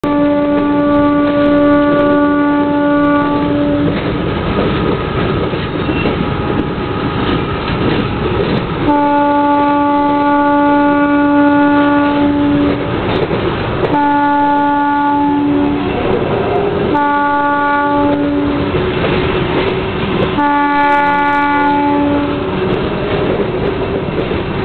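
Diesel locomotive horn sounding five blasts: a long one at the start, another long one about nine seconds in, two shorter ones, and a final long blast near the end. Between the blasts a freight train's rumble carries on.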